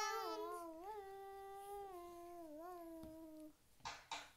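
A young girl singing one long, wavering held note that slides down in pitch and trails off about three and a half seconds in.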